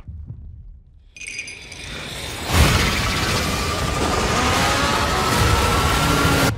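Film sound design: a faint low rumble, then a glassy high shimmer about a second in. About two and a half seconds in comes a loud crash like shattering glass, which runs on as a dense wash of noise under a slowly rising tone with music.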